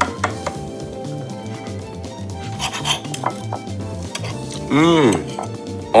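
A cake server scraping and clinking against a glass baking dish as a portion of baked crêpes is lifted out, with soft background music under it. Near the end a short rising-and-falling vocal sound from a person.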